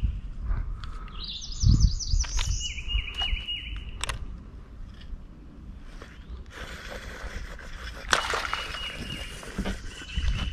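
Wild birds singing: a quick run of high, repeated notes and then a short repeated chirping phrase, with a few sharp clicks. A rushing hiss comes in for the last few seconds.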